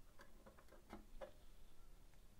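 Near silence with a few faint clicks from a small cooling fan being pressed into place on a Raspberry Pi 4 board. The fan, running, is super quiet and cannot be picked out.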